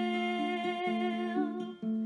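A woman's voice holding one long sung note, breaking off shortly before the end, over fingerpicked ukulele notes.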